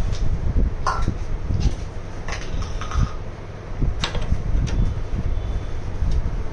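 Microscope eyepieces being handled and seated in the head's eyepiece tubes: a few light clicks and knocks, over a steady low rumble of handling close to the microphone.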